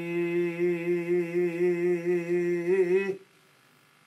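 An older man's unaccompanied voice holding one long note of Punjabi Sufi verse, wavering slightly in pitch, then breaking off about three seconds in.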